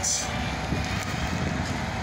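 Steady low rumble of distant traffic and machinery in an open city, with a little wind on the microphone.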